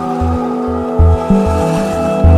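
Instrumental relaxation music: long held tones over a low, pulsing beat that repeats several times a second.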